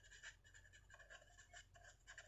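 Faint scratching of a pen writing on notebook paper, in short, irregular strokes.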